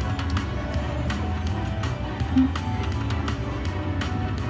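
Free-games bonus music from an Aristocrat Timber Wolf slot machine as the reels spin, with a steady beat. A short, louder low tone sounds about two and a half seconds in.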